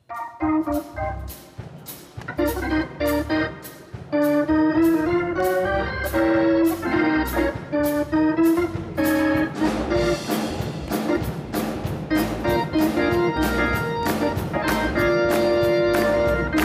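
A church band's instrumental intro starting up abruptly: organ chords over bass and drums, with cymbal strokes on a steady beat that gets busier about halfway through.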